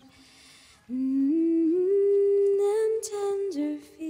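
A woman's voice humming a slow wordless melody. After a quiet first second it climbs in small steps to a held high note, then drops back down near the end.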